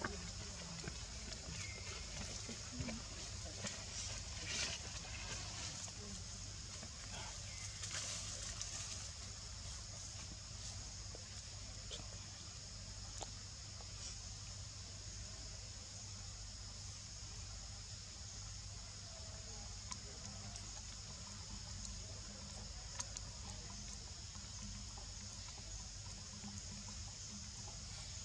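Faint outdoor ambience: a steady high-pitched hiss and a low rumble, with a few soft clicks and rustles.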